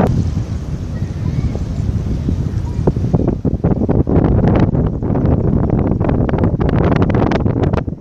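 Wind buffeting the camera microphone, a loud, steady low rumble, with many short sharp crackles and pops from about three seconds in.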